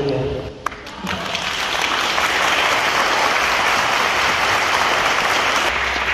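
Audience applauding: dense clapping that starts about a second in and holds steady.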